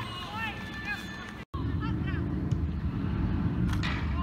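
Open-air sound at a football match: scattered distant calls and chatter from players and spectators. About a second and a half in, the sound cuts out briefly and comes back as a steady low rumble with only faint voices over it.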